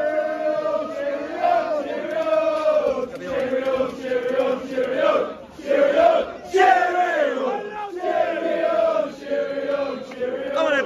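Football crowd of supporters chanting and singing together in unison.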